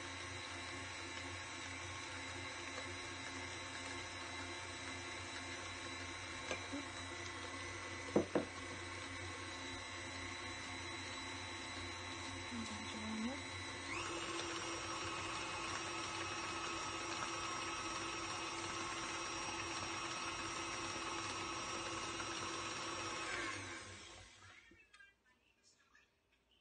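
KitchenAid stand mixer running with its wire whip, beating cream cheese and whipping cream in a steel bowl. About halfway through it steps up to a higher speed and pitch, and near the end it is switched off and winds down. A couple of brief knocks come about a third of the way in.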